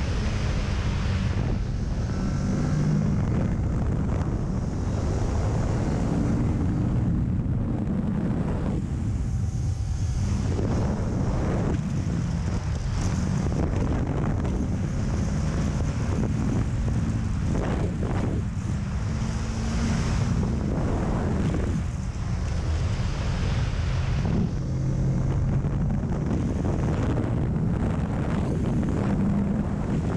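Kawasaki Ninja 650's 649 cc liquid-cooled parallel-twin engine running steadily under way as the bike gathers speed from about 95 to 118 km/h, heard from onboard with wind noise on the microphone.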